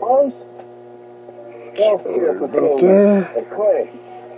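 Talk from an AM broadcast station playing through a vintage Philco radio's speaker, in short bursts, over a steady mains hum.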